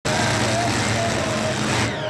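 Modified pulling tractor's engines running loudly at the start line before the pull, a steady engine note under a strong hiss that drops away near the end.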